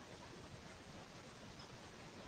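Near silence: faint steady room tone.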